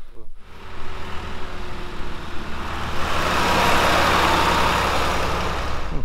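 An older John Deere loader tractor's diesel engine running as the tractor drives up, growing louder over the first three seconds.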